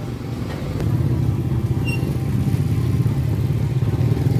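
Small motorcycle and scooter engines running close by at low speed, their hum growing louder about a second in.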